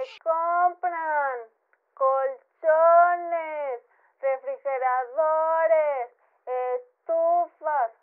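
A woman singing a series of short phrases with brief silent gaps between them, several sliding down in pitch at their ends.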